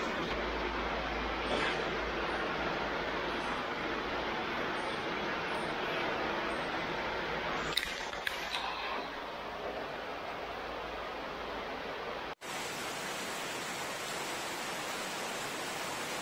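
Heavy rain falling, a steady even hiss, with a few light clicks about eight seconds in.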